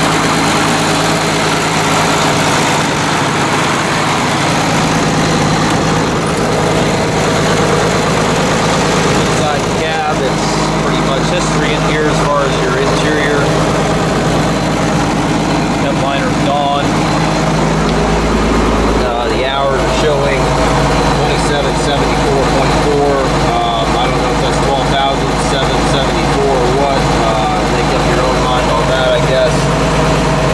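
1973 John Deere 4630's turbocharged six-cylinder diesel engine running steadily, with the low rumble growing heavier about eighteen seconds in.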